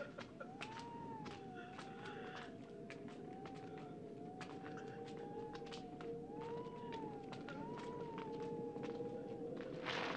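Faint, eerie film soundtrack: a single high note slowly wavering up and down over a steady lower drone, with scattered soft clicks.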